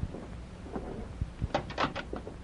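Sound effect of a jail cell door being shut and locked: a quick run of sharp metallic clicks and clanks about one and a half seconds in, after a few fainter knocks.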